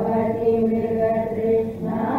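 A woman chanting a Sanskrit shloka in a slow, melodic recitation, holding long steady notes.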